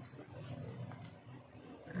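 Faint sounds of biting into and chewing a fried dough snack (kuih bom), over a low steady hum.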